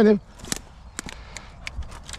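Dry sticks and twigs snapping and crackling in a pile of brush: about seven sharp, irregular cracks after the first half second, as something moves through it.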